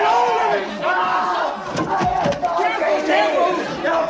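A man screaming and shouting in a frenzy, the cries of a man portrayed as possessed by a demon, with other voices crying out around him. A couple of sharp knocks come about halfway through.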